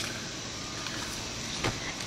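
Steady low background noise of a room, a faint hum and hiss, with one faint short tap about one and a half seconds in.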